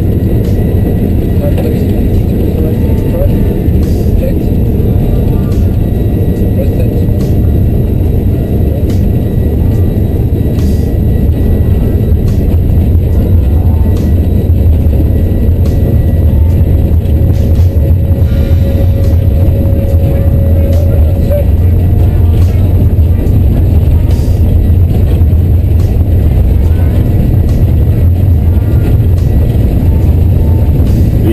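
Airbus A330 on its takeoff roll, heard from the flight deck: a loud, steady, deep rumble of the jet engines at takeoff power and the airframe rolling down the runway, building a little at first and then holding.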